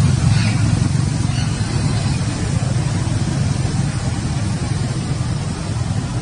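A loud, steady low rumble, with a couple of faint high squeaks in the first second and a half.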